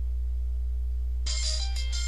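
Music from a Nokia 5310 XpressMusic phone's small loudspeaker: after a gap of about a second between tracks, a new piece starts with clear held notes. A steady low hum runs underneath.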